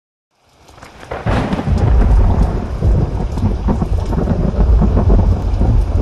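Thunderstorm: thunder rumbling continuously under steady rain, fading in from silence over the first second or so.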